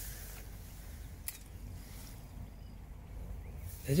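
Quiet background noise: a steady low rumble with a single faint click about a second in.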